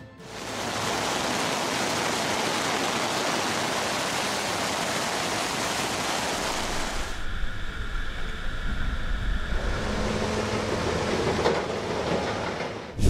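Loud, steady rush of a muddy river in flood, a dense hiss of churning water. About seven seconds in it changes to a duller, lower rush of floodwater.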